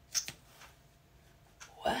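A single short click as the applicator wand is pulled out of a tube of liquid shimmer shadow, then low room quiet.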